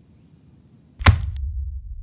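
A single sharp hit about a second in, followed by a steady low rumble that carries on.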